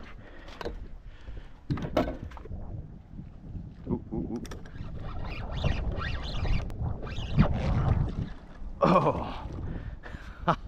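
Wind and water noise on a small fishing boat, a steady low rumble, broken by a few sharp knocks of gear being handled.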